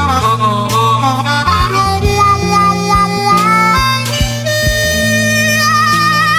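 Slow blues band recording with a harmonica lead playing bending phrases over bass and drums. About four and a half seconds in, the harmonica holds a long note with vibrato.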